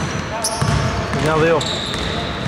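Basketball game on a hardwood gym floor: sneakers squeaking in short high chirps and a ball bouncing, heard with the echo of a large hall. A voice calls out briefly about a second in.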